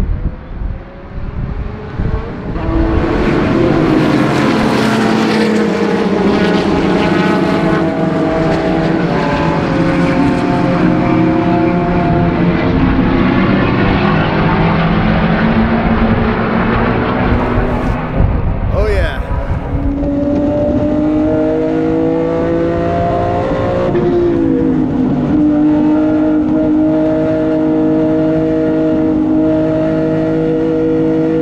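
Race car engines at full throttle, many overlapping and changing in pitch as a field of cars goes by. From about twenty seconds in, one race car's engine is heard from inside its cabin, rising in pitch, dropping once sharply about four seconds later, then pulling steadily again.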